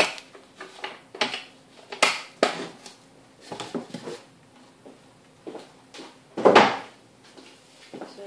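Knocks and clatter of objects being handled in a wooden box on a worktop: about a dozen short, sharp knocks, unevenly spaced, with the loudest, longer clatter about six and a half seconds in.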